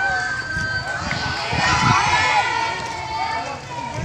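Indistinct chatter and calls of a group of teenage students, several voices overlapping with none clear enough to make out words.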